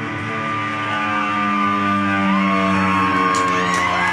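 Live rock band holding a long sustained chord on guitars, bass and keyboards, with no drum hits, slowly swelling. Notes slide in pitch near the end.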